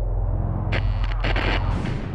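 Intro sound effects: a deep, steady rumble, with a noisy blast-like swell coming in under a second in and lasting about a second.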